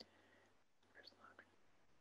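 Near silence: quiet room tone, with a faint click at the start and a few faint, soft sounds about a second in.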